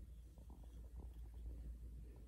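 Faint gritty scratching of a wooden stick being rolled through granulated sugar on a ceramic plate, with a few small ticks in the first second, over a low steady rumble.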